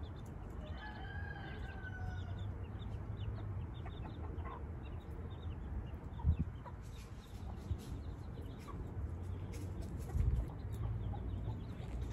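Chickens: a brood of small chicks peeping faintly and repeatedly, with one drawn-out, slightly falling call from an adult chicken about a second in. A couple of dull thumps come in the second half.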